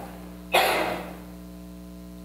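One short cough from the man at the microphone, about half a second in, over a steady mains hum in the sound system.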